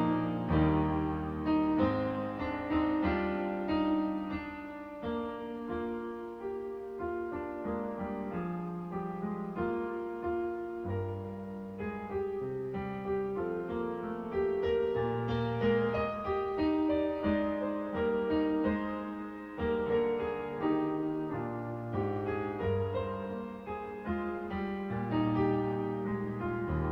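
Electronic keyboard played with a piano sound: a hymn tune in full chords, with a bass line moving beneath.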